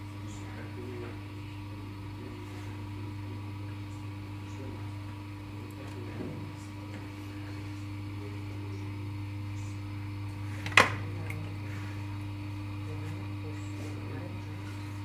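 Potter's wheel motor humming steadily as the wheel turns under wet clay being worked by hand, with one sharp click about three-quarters of the way through.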